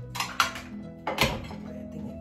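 Dishes knocking and clattering on a countertop a few times, around a quarter second in and again a little after a second in, over steady background music.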